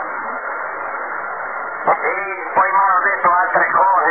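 Shortwave radio reception on the 45-metre band: about two seconds of noisy band hiss with faint, unclear traces, then a voice comes through the receiver, with a sharp click or two as it starts.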